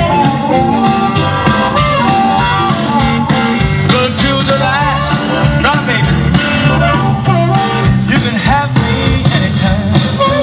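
Live electric blues band playing an instrumental passage: amplified blues harmonica, played cupped against a handheld microphone, wails and bends over electric guitar and drums.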